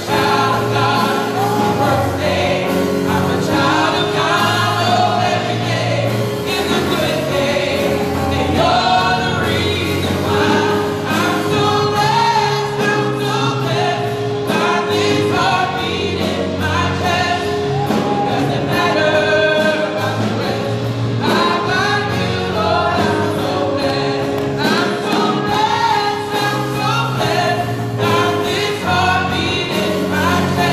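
A live gospel praise team, several voices singing together, with keyboard accompaniment and a steady bass line underneath.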